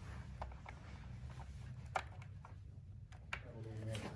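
Faint scattered clicks and taps of hands fitting a jumper cable onto a loudspeaker's metal binding posts, over a low steady room rumble.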